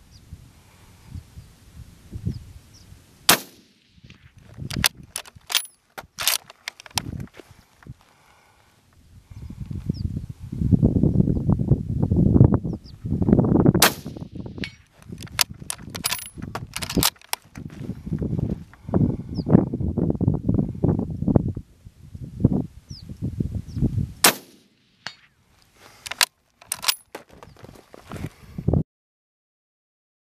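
Arisaka Type 38 carbine firing three shots about ten seconds apart, with smaller sharp metallic pings of hits on a steel target. A low rumbling noise runs between the shots in the middle stretch.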